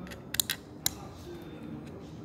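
Small metal parts of a clutch booster clicking sharply as they are handled and fitted by hand: a quick run of three clicks, then one more just before the first second is out.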